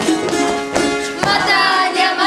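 Children's folk ensemble performing a dance song: rapid percussive beats over sustained tones, then group singing by young voices begins about one and a half seconds in.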